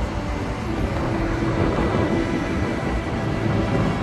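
Electric multiple-unit commuter train running along the track toward the listener: a steady rumble with a faint tone held through the middle.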